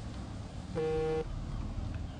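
A vehicle horn sounds once, a steady, even-pitched toot of about half a second, starting about three-quarters of a second in, over a low outdoor rumble.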